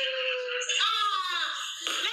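A person's voice in long, wordless, drawn-out high notes, with a higher note sliding down in pitch about a second in.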